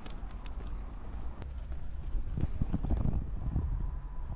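Wind buffeting a handheld camera's microphone, a low rumble that gusts louder about halfway through, with footsteps on cobblestones underneath.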